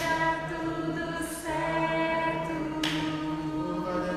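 Slow worship singing in a church, long sustained notes held for a second or more each, with short breaks between phrases.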